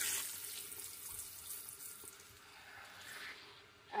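Water from a shampoo-bowl hand sprayer running over hair and splashing into the basin, loudest in the first second and fading toward the end.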